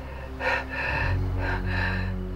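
Two long, gasping breaths, one about half a second in and one near the end, over a low steady hum.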